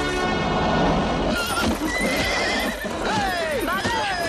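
Horse whinnying: a quavering high call about two seconds in, then several falling neighs near the end, over splashing water.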